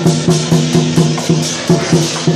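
Chinese lion dance percussion: a large barrel drum beaten in a steady, driving rhythm of about four strokes a second, with cymbals clashing on the beats.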